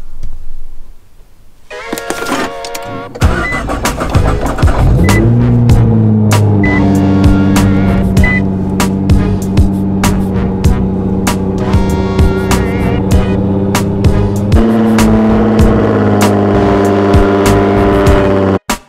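Nissan GT-R R35 twin-turbo V6 starting about three seconds in, flaring briefly and settling into a loud steady idle. Background music with a steady beat plays over it.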